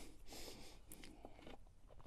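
Near silence: faint background noise with a few soft clicks.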